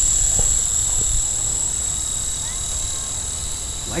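Small remote-control camera helicopter's electric motors whining in a steady high tone as it climbs away, growing slightly fainter, with wind rumbling on the microphone.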